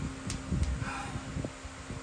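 A few light clicks and handling noises from metal suspension parts being held and moved by hand, over a steady low hum.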